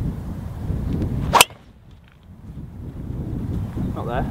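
A driver striking a golf ball off the tee: one sharp crack about a second and a half in, the loudest sound, over low wind rumble on the microphone.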